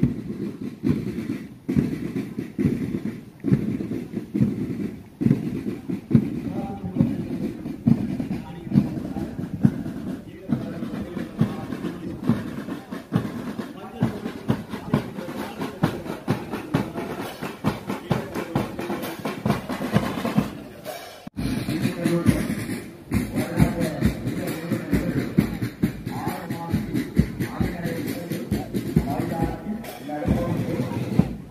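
School marching band's drums beating a steady march rhythm, with a brief break about two-thirds of the way through.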